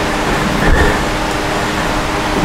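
Steady rushing noise with a faint constant hum, from a fan or similar air-moving machine running.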